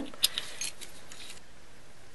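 Threaded metal end cap being screwed onto a polymer clay extruder barrel: a few light metallic clicks and scrapes in the first second and a half, then only faint hiss.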